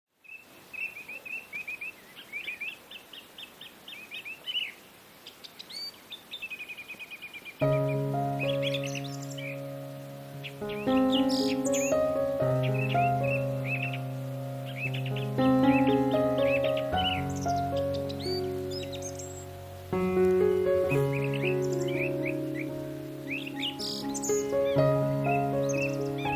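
Small birds chirping rapidly, alone for the first third, then joined by instrumental background music of held notes about a third of the way in while the chirping carries on over it.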